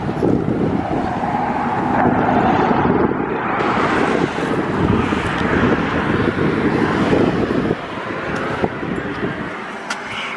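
Wind buffeting the microphone, with a car passing on the road; the buffeting drops off suddenly near the end.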